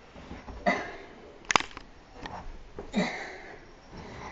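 A person's short, noisy breaths or grunts of effort, three bursts about a second apart while bending over and handling a heavy bag, with a sharp knock between the first two.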